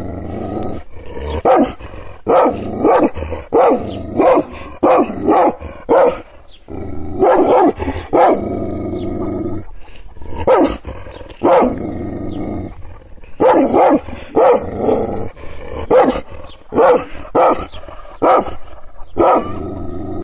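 Kangal shepherd dog barking angrily in deep, repeated barks, about one to two a second. The runs of barks are broken twice by longer, drawn-out low sounds.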